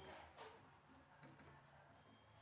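Near silence, with two faint, quick clicks of a marker tip touching a whiteboard a little over a second in.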